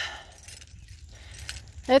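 Faint light metallic jingling of small loose metal pieces, over a low steady rumble of wind or handling on the microphone.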